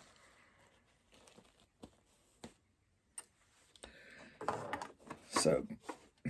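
Faint handling of a cotton cushion cover, with a few small sharp ticks in the first half as pins are handled. From about two-thirds of the way through comes a louder stretch of fabric rustling, with a brief murmur of a woman's voice near the end.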